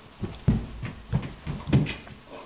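A run of heavy footfalls thudding on a carpeted floor, about six in two seconds, the loudest about half a second in and near the end.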